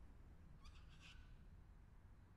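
Near silence with a single brief, faint bird call, a quick cluster of high chirps about half a second in, over a low steady background rumble.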